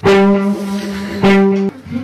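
A loud, steady musical note, held and then sounded again at the same pitch a little past the middle, stopping shortly before the end.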